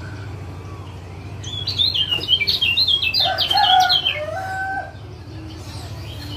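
Kecial kuning (yellow white-eye) calling: a fast run of high, sharp chattering notes that starts about a second and a half in and lasts about three seconds, with lower held notes joining in its second half. A steady low hum lies underneath.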